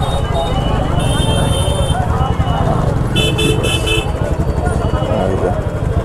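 Royal Enfield Classic 350's single-cylinder engine running at low speed with a steady thump, under the chatter of a crowd. High-pitched horn toots sound about a second in and again, in quick repeated beeps, about three seconds in.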